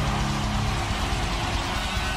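Loud rock music: a dense, steady wall of distorted electric guitar.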